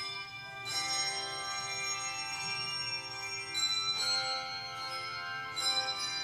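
Handbell choir playing a slow piece: chords of ringing bells struck about a second in, again near four seconds and shortly before the end, each left to ring on.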